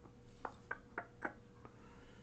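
Five light, sharp clicks at uneven intervals from a computer being worked to edit a spreadsheet, over a faint steady hum.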